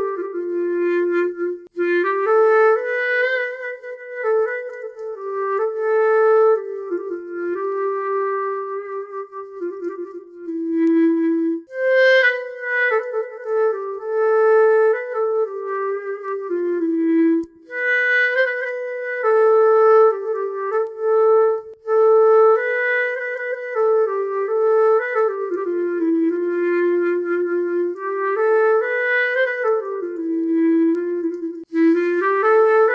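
SWAM Clarinet virtual instrument played live from an Akai electronic wind (breath) controller: a light solo clarinet melody of single, smoothly joined notes. The phrasing is shaped by the player's breath, with short breaks between phrases about 12 and 17 seconds in.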